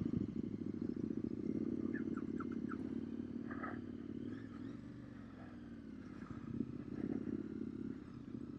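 Motorcycle engine idling, a steady low hum that dips a little midway and picks up again near the end, with a few faint ticks about two seconds in.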